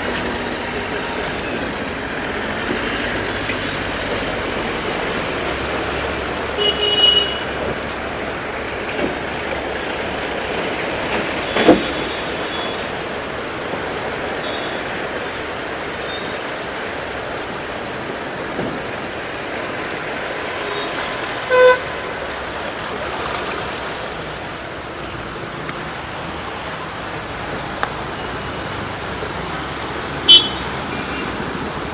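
Road traffic wading through a flooded street: a steady wash of engine and water noise, with a vehicle horn sounding briefly about seven seconds in and again about twenty-two seconds in. A single sharp knock comes a little before halfway.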